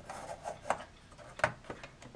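Small plastic kit parts of a 1/200 scale USS Iowa model rubbing and clicking as they are pressed into locating holes in the plastic deck: a light scrape, then two sharp clicks about three quarters of a second apart.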